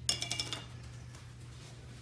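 Lid of a small metal beard balm tin clinking and rattling against the tin as it is opened, a quick run of metallic clicks lasting about half a second.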